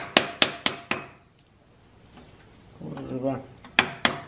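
A tool knocking sharply on a scooter's aluminium exhaust silencer: four quick metallic taps about a quarter second apart, then one more near the end. The taps are working at a silencer part that is stuck and won't come free.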